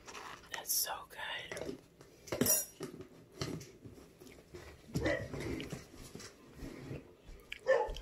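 Close-up eating sounds: a metal fork against a plate and mouth sounds of eating strawberry shortcake, in a few short sharp bursts, the loudest about two and a half seconds in, with soft murmured voice in between.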